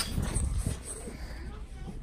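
Indistinct, wordless voices of people, with low thumps of handling noise from a handheld phone being carried.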